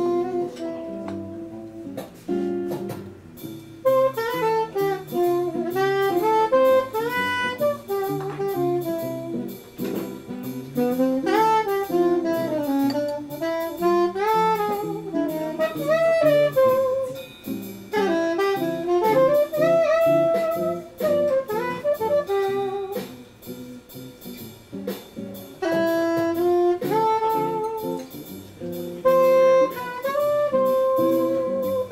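Soprano saxophone playing a melody with slides between notes, over strummed acoustic guitar chords.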